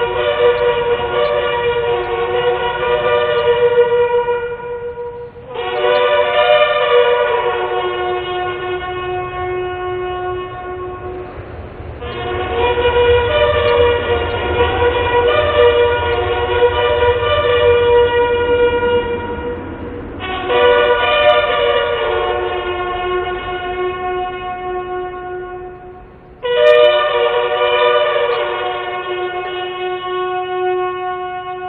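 Several bugles sounding a slow ceremonial call together, in long held notes of several seconds each. A new note comes in about five seconds in, again around twelve and twenty seconds, and once more near the end.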